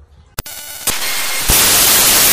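A sharp click, then a loud, even hiss that steps up louder about a second and a half in.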